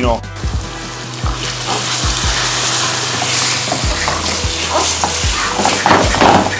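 Spaghetti and starchy pasta cooking water sizzling and bubbling in a hot pan over a gas flame as the pasta is stirred, the sizzle growing louder about a second and a half in.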